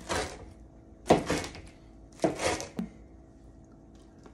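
A rocker pizza knife crunching down through a crisp, well-baked pizza crust onto a cutting board: three sharp crunching cuts about a second apart.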